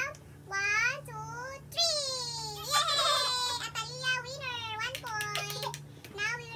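Young girls' high-pitched voices in sing-song squeals and laughter, with one long drawn-out call around the middle. A few light clicks come near the end.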